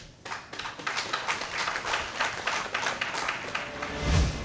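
Brief applause from a small group, a dense run of sharp irregular claps at a statement's end.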